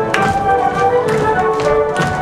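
Polish folk dance music playing, with dancers' shoes repeatedly stamping and tapping on the stage floor over the melody.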